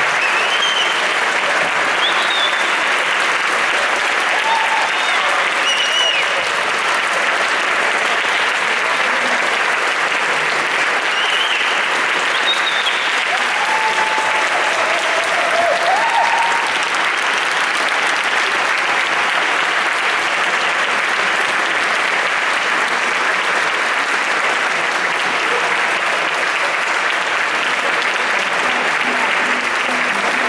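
Large audience applauding, steady and sustained clapping.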